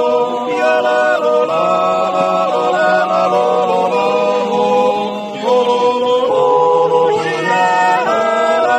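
A small group of men yodelling a cappella in close harmony, wordless, with held notes, and a lower voice holding one long note under the others through the middle.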